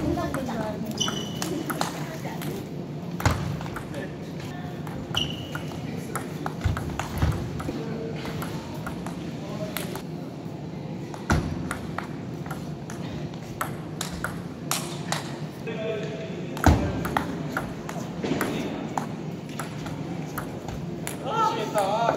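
Table tennis rallies: the ball clicking sharply off paddles and the table in irregular series, with a few louder hits.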